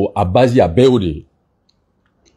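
A man's voice speaking forcefully for about a second, then breaking off into near silence.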